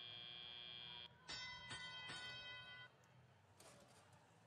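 Faint bell-like chime from the competition field's sound system, signalling the start of the driver-controlled period. It rings from about a second in for about a second and a half, just after a steady high tone stops.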